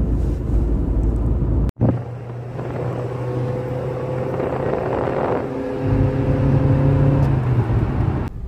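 Car engine and road noise heard inside the cabin while driving: a heavy low rumble that drops out abruptly about two seconds in, then a steady engine hum with a few level tones, growing louder near the end.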